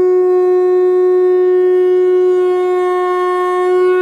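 One long note blown on a horn-like wind instrument, held steady at a single pitch.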